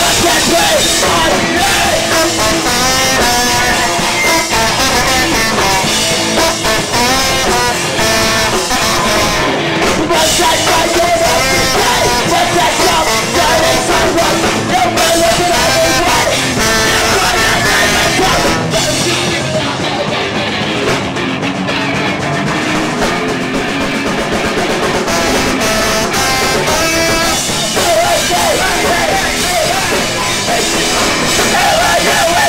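A ska-core band playing live and loud: drum kit, guitars and singing in a fast punk-rock song.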